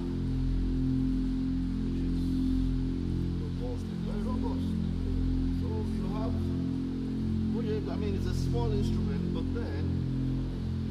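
Sanus two-manual, 27-stop organ playing sustained low chords, with the notes changing every second or two, on a registration combining a string stop with a flute stop.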